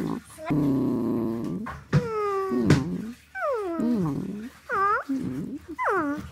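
A pet dog "talking back": a string of about six drawn-out grumbling whines that slide down and up in pitch, the longest lasting over a second.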